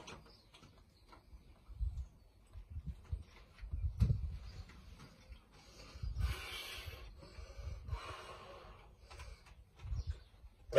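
Handling noise from a plastic pond pump being worked over a bucket: a string of dull knocks, with two short noisy bursts a little past the middle as water is forced or drained out of the pump.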